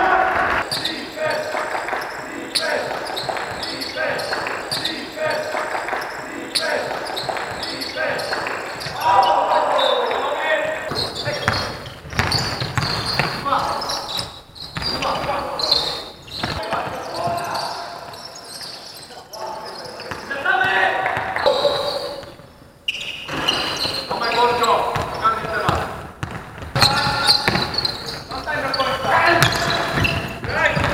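Live court sound of a basketball game in a sports hall: a basketball bouncing on the hardwood and players' voices calling out across the court.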